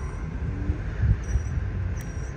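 Steady low rumble of outdoor background noise, with a brief louder bump about a second in.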